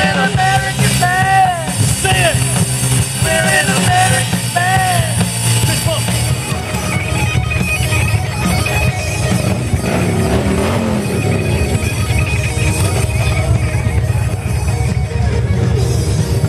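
Loud rock music led by electric guitar, with a run of repeated bending, arching notes in the first few seconds before the playing turns into a dense, steady wall of sound.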